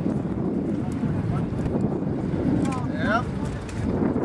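Wind rumbling on the microphone throughout, with faint background voices; about three seconds in, a brief high sliding sound rises and falls.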